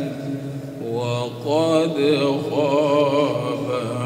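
A man reciting the Quran in the melodic tajweed style into a microphone. After a brief dip at the start, his voice comes back about a second in with long, wavering, ornamented held notes.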